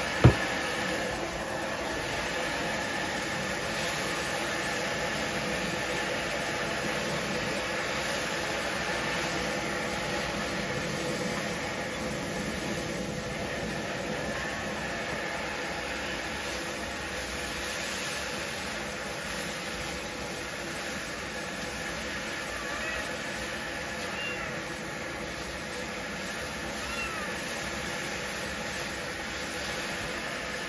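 Stir-frying in a steel wok over a bottled-gas burner: steady sizzling and burner noise, with one sharp clank just after the start. A cat meows faintly several times in the second half.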